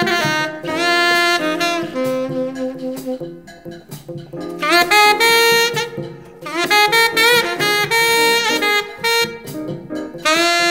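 Jazz recording of a saxophone playing a melody in phrases. It eases off about a third of the way in, then slides upward into new phrases about halfway through and again a little later.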